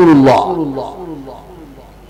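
A man's amplified preaching voice holds the end of a phrase and then echoes away: the falling tone repeats several times and fades over about a second and a half, leaving faint room tone.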